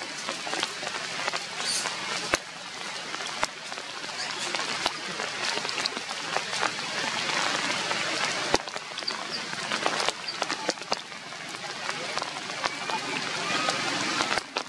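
Rain falling on tree foliage: a steady hiss with scattered sharp drips and taps.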